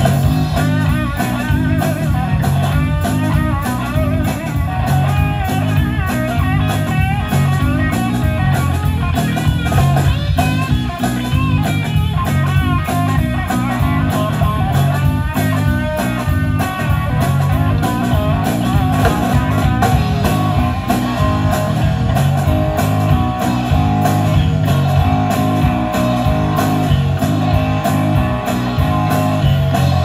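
Live blues-rock band playing an instrumental passage: two electric guitars over a steady drum-kit beat, with a lead guitar line full of bent notes through the first half.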